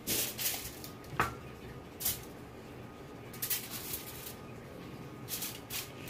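Aluminum foil crinkling and broccoli rustling as they are handled on a foil-lined baking sheet, in a few short bursts, with one light knock about a second in.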